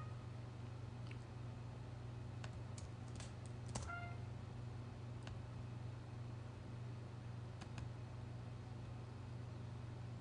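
Scattered faint computer mouse and keyboard clicks over a steady low hum, as notes are entered in notation software. About four seconds in, the software plays back one short synthesized note.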